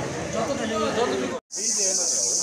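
Several people's voices talking over one another, cut off by a brief dropout about one and a half seconds in. After it, voices continue over a steady high-pitched hiss.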